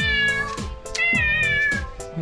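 Background music with a steady drum beat, over which a cat meows twice. Each meow is long and falls slowly in pitch.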